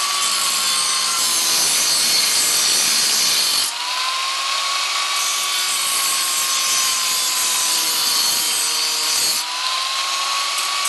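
Angle grinder with a cutting disc slicing through steel pipe: a steady motor whine over a harsh grinding hiss. The cut eases off briefly about four seconds in and again near the end, the whine climbing in pitch each time as the load comes off.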